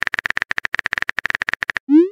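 Phone keyboard typing sound effect from a texting app: a rapid, even run of clicks, about a dozen a second. Near the end a short rising swoosh begins, the sound of the message being sent.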